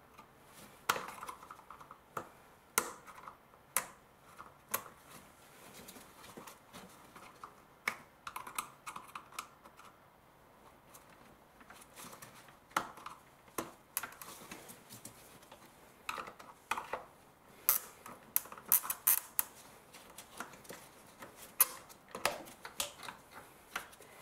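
Irregular small plastic clicks and rattles from an electrical connector clip and the plastic air box being worked by hand, the clip stuck and not releasing easily. There is a busier run of clicks about two-thirds of the way through.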